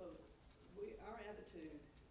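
Faint, distant speech: a class member talking well away from the microphone, only a few words rising above the room's hush about halfway through.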